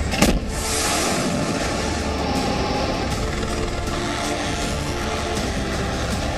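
A single sharp blast just after the start, as from a ship's deck gun firing, followed by a long steady rushing noise, over dramatic background music.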